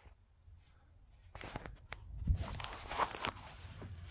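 Rustling and handling noise with scattered clicks and a few low thuds, starting about a second in: a person moving about and handling the phone and wired clips.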